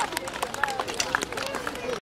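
Quiet talk among people outdoors, against street noise, with several short light clicks and knocks scattered through.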